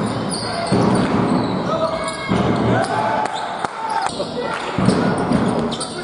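Live basketball game in a sports hall: a basketball bouncing on the hardwood court amid players' voices calling out, with the hall's echo.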